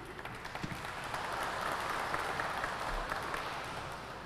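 Audience applauding, swelling over the first couple of seconds and tapering off near the end.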